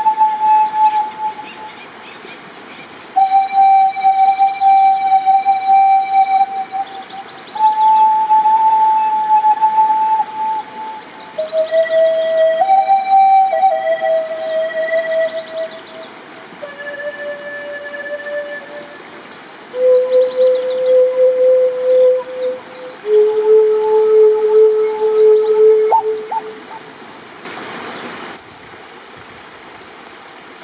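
Native American-style wooden flute playing a slow melody of long held notes, stepping down to its lowest notes before the phrase ends about 26 seconds in. Creek water runs underneath and is heard on its own after a brief rush of noise near the end.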